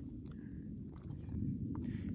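Faint low rumble of wind on the microphone, with a few soft clicks in the second half.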